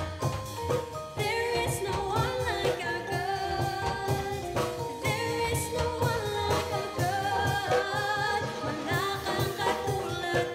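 A live worship band playing a gospel-pop song: a woman sings lead into a microphone with a backing singer, over electric guitar, bass guitar and drums keeping a steady beat.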